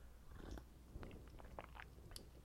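Faint, scattered soft clicks and rustles of a deck of tarot cards being handled and shuffled in the hand.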